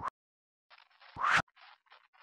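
A short, loud rising whoosh about a second in. Around it runs faint, irregular scratching of a pen writing on paper.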